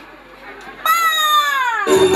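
A woman's amplified voice calls out one long, drawn-out word, high and falling in pitch, for about a second. Music starts suddenly right at the end.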